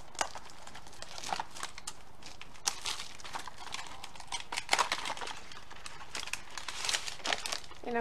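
Small cardboard candy box being opened by hand, with irregular tearing of the flap and crinkling and rustling of the wrapped mints inside, as a run of scattered crackles.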